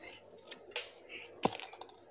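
Scissors cutting open a small plastic seasoning sachet: a few light clicks and crinkles, the sharpest about a second and a half in.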